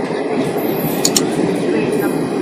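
Passenger train coaches running past at speed: a steady rumble of wheels on the rails, with two sharp clicks about a second in.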